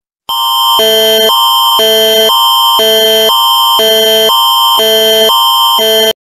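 Canadian Alert Ready emergency attention signal: a loud electronic alert tone that alternates between a higher and a lower chord about twice a second over a steady high tone. It starts about a third of a second in.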